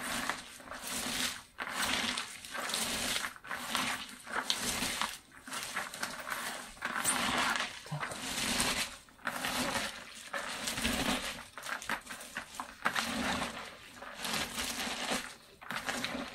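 Shredded cabbage and carrot being squeezed and tossed by hand in a plastic bucket: a wet, crunchy rustle coming in strokes about once a second. The cabbage is being mixed with salt and pressed so that it releases its juice, the salting stage of making sauerkraut.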